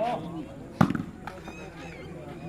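A volleyball struck hard by hand once, a sharp slap a little under a second in, amid shouts from players and spectators.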